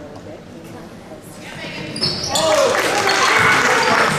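Gym quiet at first, then about two seconds in a rising clamor of players' and spectators' voices shouting and calling out in a large echoing hall, with a basketball bouncing on the hardwood court.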